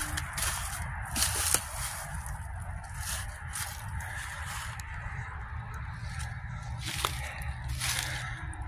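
Footsteps crunching and rustling through dry fallen leaves, in irregular steps, over a low rumble of wind on the microphone.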